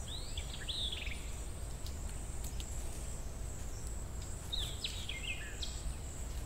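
Woodland ambience: insects keep up a steady high-pitched drone over a low background rumble. A bird gives a quick run of falling chirps right at the start and another about four and a half seconds in.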